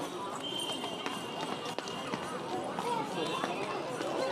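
Faint voices of people talking in the background, in an open outdoor space. A thin, steady high tone sounds for about a second and a half, and there is a single click a little under two seconds in.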